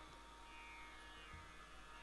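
Near silence, with only a faint steady electrical hum.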